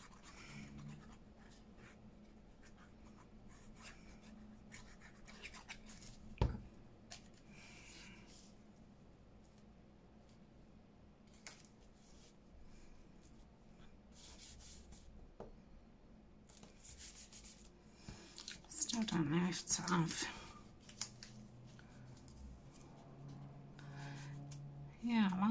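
Faint paper handling: pieces of paper being positioned, pressed and smoothed down by hand onto a card, with short rustles. A single knock comes about six seconds in, and a brief voice-like murmur is the loudest sound, about three quarters of the way through.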